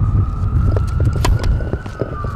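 Tennis racket striking the ball on a serve, one sharp crack about a second in, over a heavy low rumble of wind on the microphone. A long high whine, like a distant siren, rises slowly in pitch and breaks off near the end.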